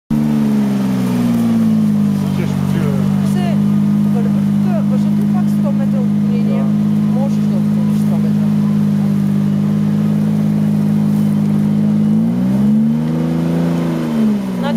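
Off-road SUV's engine revving hard under load while the vehicle is stuck nose-down in a muddy rut. The revs sag a little in the first second or two, hold steady for about ten seconds, then climb and drop again near the end.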